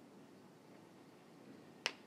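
A single short, sharp click near the end, over a faint, steady background hiss.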